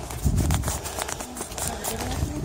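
Footsteps on a hard surface and irregular knocks from a handheld phone camera being moved, over a low rumble.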